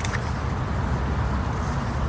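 Steady low rumble of passing road traffic, with a brief paper rustle at the start as a book page is turned.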